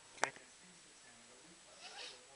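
A single short, sharp click about a quarter of a second in, then faint room tone.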